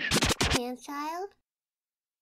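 A scratch effect on the spoken-word vocal sample of an instrumental beat: a quick run of sharp scratch strokes, then a short warped snatch of voice. The track then cuts off into silence about a second and a half in.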